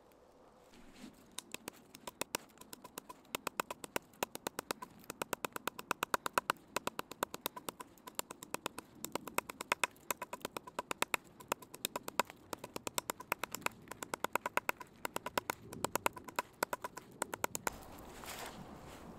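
Dry, year-old stinging nettle stems struck over and over with a wooden stick against a log, to crush the brittle stems and free the fibres. It sounds as rapid, sharp, even taps, several a second, starting about a second in.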